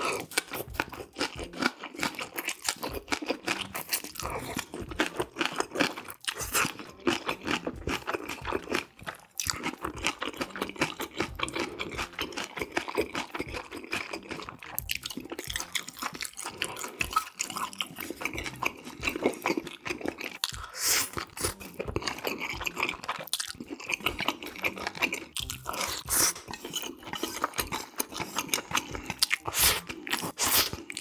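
A person chewing and crunching mouthfuls of black-bean sauce noodles and green onion kimchi close to the microphone, a continuous run of quick wet crunches and chewing sounds.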